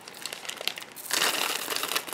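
A small clear plastic bag crinkling as it is handled and filled with small millefiori glass tiles, with a few light clicks at first and the crinkling getting louder a little past halfway.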